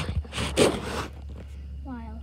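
Phone microphone rubbing and rustling against clothing as it is handled, loudest in the first second, over a steady low rumble. A short vocal sound comes near the end.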